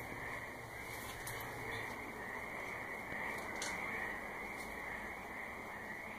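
A dense, steady chorus of frogs calling at night, with a few faint clicks.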